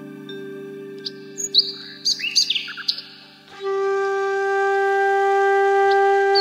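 Birds chirping in short quick calls over a soft sustained musical drone, then, a little past halfway, a bamboo flute comes in loudly with one long held note.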